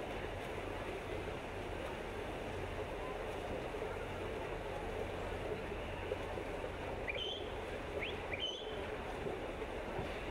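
Steady wash of splashing from swimmers racing down an outdoor pool, mixed with the low murmur of spectators. A few short rising whistled chirps come about seven to nine seconds in.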